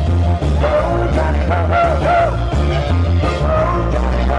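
Live polka band playing loud, with drum kit, bass guitar, keyboard and saxophone. A melody line swoops up and down in pitch over a steady bass line.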